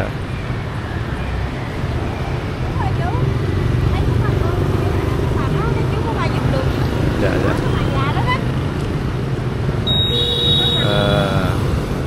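Busy street-market ambience: motorbike traffic running steadily, with background voices of people around. A short high tone sounds about ten seconds in.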